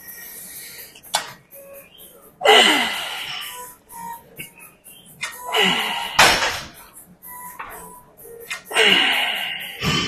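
A man's forceful, straining exhalations with falling pitch, one roughly every three seconds, as he pushes through reps on a leg machine, with a sharp knock about six seconds in. Music plays underneath.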